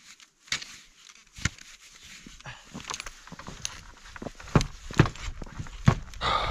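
Clicks and knocks of a snowshoe's binding straps and buckles being undone and the snowshoe handled, with shuffling in snow. The sharpest knocks come in the second half.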